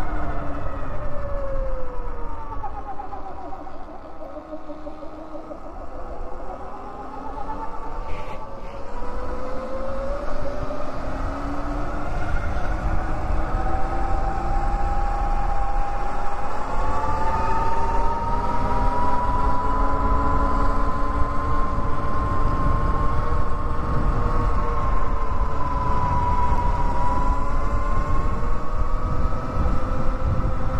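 Electric motorbike's drive motor whining over wind and road rumble. Its pitch falls as the bike slows over the first few seconds, then climbs as it speeds up and holds high and steady, with one brief knock about eight seconds in.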